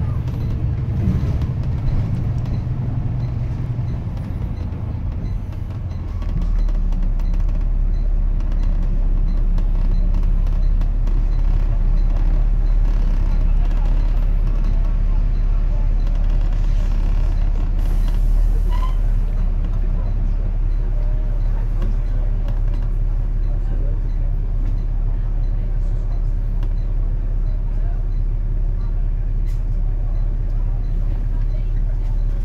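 Double-decker bus engine heard from on board: a low rumble while moving, which about six seconds in settles into a steady low drone as the bus stands still. A brief hiss comes about eighteen seconds in, typical of air brakes.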